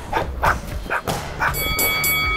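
A man shadowboxing, with short, sharp exhaled breaths as he throws punches, several in quick succession. A held musical chord comes in about three-quarters of the way through.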